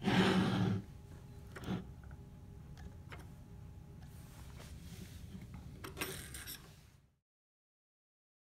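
Microscope stage parts being handled and fitted: a brief scraping slide as the universal holder goes into place, then a few light clicks and knocks. The sound cuts to silence about seven seconds in.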